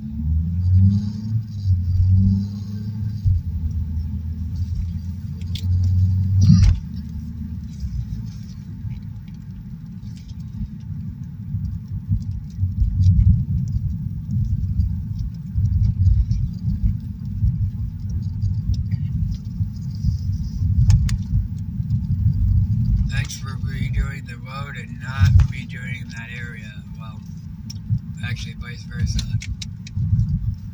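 Low rumble of road and engine noise inside a moving car's cabin, with a steadier engine hum over the first several seconds as the car drives on from a green light. There is a single sharp click about six and a half seconds in.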